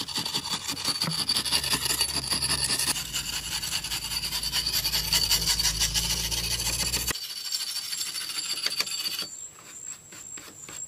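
Flat steel scraper blade rasping against a soft carved stone column in quick, repeated strokes. Near the end it gives way to a few separate, sharper knocks.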